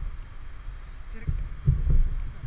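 Low rumble and a few dull thumps near the end, handling noise on a body-worn camera as hands and a rope work against the bungee harness it is strapped near.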